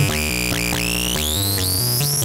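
Modular synthesizer signal through a Doepfer A106-1 Xtreme Filter, with the resonance near self-oscillation and the clipping level turned down: a stepping, distorted, buzzy bass sequence. A high resonant whistle rises in pitch over the second half as the high-pass level knob is turned.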